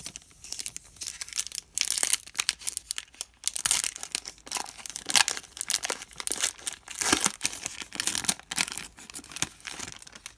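Shiny foil-plastic wrapper of a hockey card pack being torn open and crinkled by hand: dense, irregular crackling that stops just at the end.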